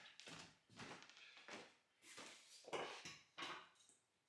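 Mostly quiet, with a handful of faint, short knocks and scuffs from suspension parts being handled and set down on a concrete garage floor; the loudest come near three seconds in.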